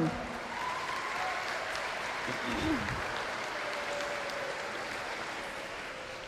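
An audience clapping steadily in a large gymnasium, dying away a little near the end.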